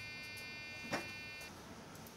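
A steady electronic buzzer tone made of several high pitches, which cuts off suddenly about one and a half seconds in, with a single sharp click shortly before it stops.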